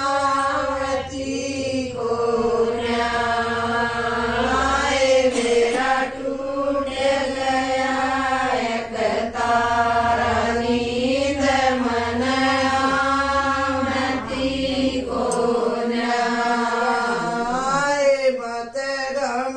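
Women singing a slow folk song (geet) together in a chant-like melody, with long held notes that rise and fall.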